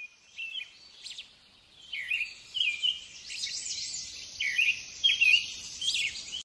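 Birds chirping: short sweeping calls that come more often from about two seconds in, over a steady high hiss.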